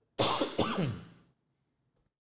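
A man coughing twice into his cupped hands, the second cough trailing off with a falling voiced tail.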